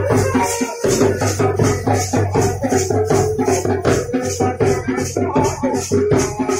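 Band baja wedding band music: a steady fast beat of drum and jingling shaker-like percussion under a sustained melody line, with a brief break in the beat about a second in.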